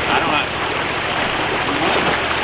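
Steady rush of a small rocky creek flowing over a shallow riffle.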